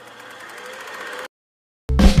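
A fast whirring rattle sound effect that grows louder for just over a second, with a faint rising tone in it, then cuts off suddenly. After a short gap, music with marimba-like mallet notes starts near the end.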